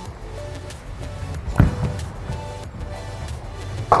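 Bowling ball released onto a wooden lane: it lands with one heavy thud about a second and a half in and rolls on, then hits the pins in a loud crash right at the end. Background music plays throughout.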